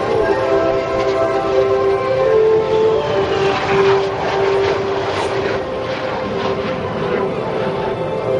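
Jet aircraft engines passing overhead: a loud, steady whine of several held tones over a rushing roar that swells about halfway through.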